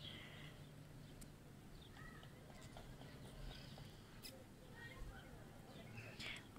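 Near silence: faint background hiss with a few faint ticks.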